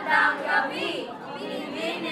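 Several students talking over one another in overlapping chatter, with no single clear speaker.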